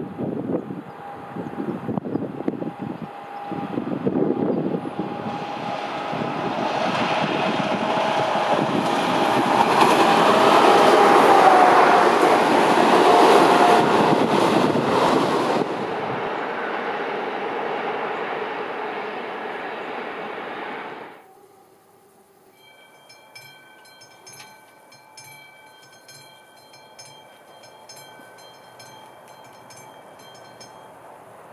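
Class 754 'Goggles' diesel locomotive hauling an express train approaches and passes, its engine and running gear loudest about ten to fourteen seconds in, then the train fades away. About twenty-one seconds in, the sound changes abruptly to a level-crossing warning bell ringing with a regular beat.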